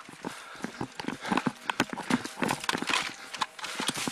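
Running footsteps and jostling gear of two police officers, picked up by their chest-worn body cameras: quick, uneven thuds and knocks, several a second.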